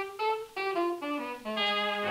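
Instrumental introduction of a circa-1930 dance-band recording: a wind instrument plays a run of short notes stepping down in pitch, about four a second.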